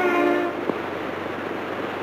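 Orchestral film score: a held chord that breaks off about half a second in. It gives way to a steady, even rumble of noise, with one sharp click just after the chord ends.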